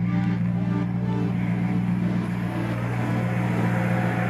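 Off-road competition car's engine running at a steady, even pitch, with no revving.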